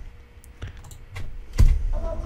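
A few short clicks from working a computer's mouse and keyboard, with one louder click and a low desk knock about three-quarters of the way in. Music playback from the editing software starts just at the end.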